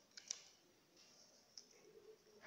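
Near silence: room tone, with a couple of faint short clicks shortly after the start.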